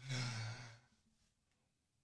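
A man's short breathy sigh, lasting under a second, followed by silence.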